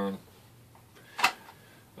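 A single sharp click or knock a little past a second in, from the hard plastic of an RC buggy being handled and turned over in the hands.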